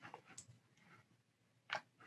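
Near silence, with a single short click near the end.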